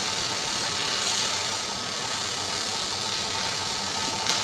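Electric arc welding: the arc makes a steady, dense crackling hiss.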